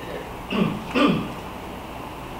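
A man clearing his throat twice, about half a second apart, the second slightly louder.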